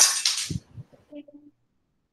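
A short rush of noise on a video-call microphone, about half a second long with a dull knock at its end, followed by a faint brief murmur of a voice.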